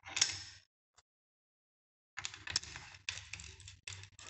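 Small metal fasteners, the nuts and washers going onto the four cylinder-head studs of a Honda single-cylinder motorcycle engine, clicking and rattling as they are placed and threaded by hand. A short burst of clicks comes at the start, then after a pause a run of light, irregular clicks.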